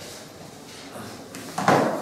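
A quiet pause with room tone, then near the end a brief handling noise of something moved on the tabletop close to the microphone.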